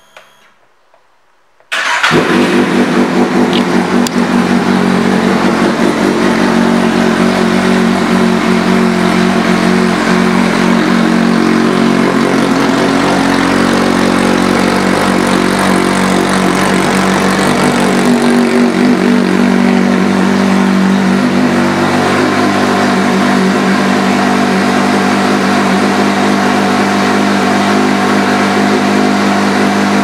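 A 2016 Kawasaki Z800 inline-four fitted with an aftermarket exhaust is started about two seconds in. It settles into a steady idle that runs on.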